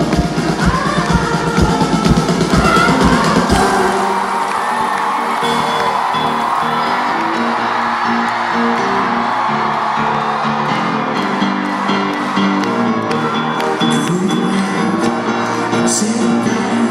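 Live pop band music recorded from the audience: a steady kick-drum beat for about the first four seconds, then the drums drop out and held keyboard chords carry on, with the crowd whooping over the music.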